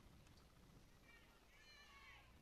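Near silence: faint open-air ballpark ambience, with a faint high-pitched wavering call from about a second in.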